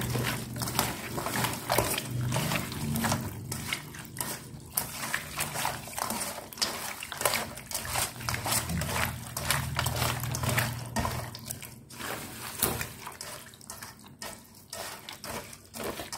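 Wet, irregular squishing of salted raw chicken pieces being squeezed and rubbed by a rubber-gloved hand in an aluminium bowl, with light knocks against the bowl; the salt draws the blood out of the meat before rinsing. A low steady hum runs underneath.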